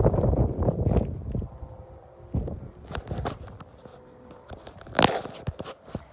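Handling noise from a handheld phone microphone being moved about outdoors: a low rumble at first, then scattered knocks and rustles, with one sharp bump about five seconds in.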